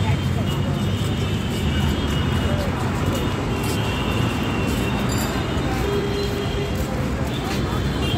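Busy city street noise: a steady rumble of road traffic and buses mixed with the voices of passers-by.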